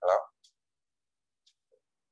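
A voice finishing a word in the first moment, then near silence broken only by a few faint, very short clicks.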